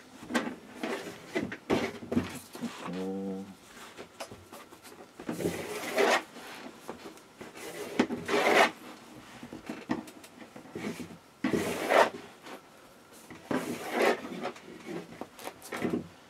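Kite string being wrapped around a folded cotton T-shirt: irregular rubbing swishes of string and fabric under the hands, with louder strokes every couple of seconds. A brief hum of voice about three seconds in.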